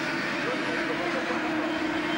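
Pack of 100cc two-stroke Formula A racing karts running at speed, heard as one steady engine note.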